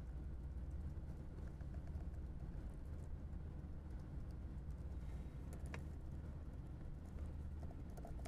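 A few faint, scattered computer keyboard keystrokes over a steady low room hum, as a command line is edited.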